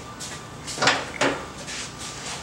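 The hood of a riding lawn mower being handled, giving a sharp clunk a little under a second in and a lighter knock just after, over a faint steady hum.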